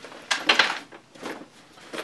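Fabric 9.11 Tactical Series rifle bag rustling as it is lifted, turned and moved: one loud swish about a third of a second in and a fainter one just after a second.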